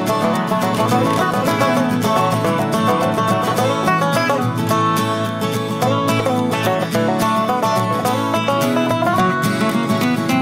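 Background music: an upbeat acoustic tune with quick plucked-string notes, in a bluegrass style.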